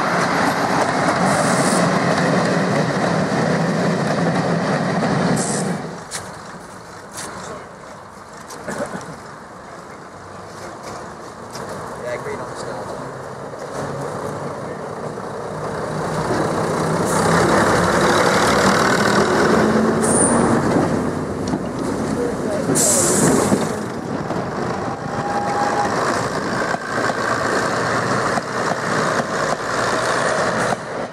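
First-generation diesel multiple unit's underfloor diesel engines running, loud for the first few seconds, dropping away about six seconds in, then building again from about sixteen seconds as a unit gets under way. Brief hisses of air come a few seconds later.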